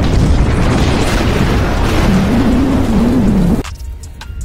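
An explosion sound effect: a long, rumbling blast lasting about three and a half seconds that cuts off suddenly near the end.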